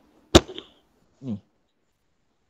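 A single sharp knock about a third of a second in, then a brief sound sliding down in pitch about a second later, picked up by a participant's unmuted microphone in an online call.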